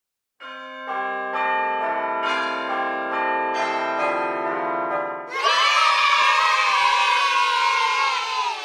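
Produced intro sound: sustained bell-like notes enter one after another and build into a held chord. About five seconds in, this gives way to a louder, dense wavering swell that slowly falls in pitch and fades.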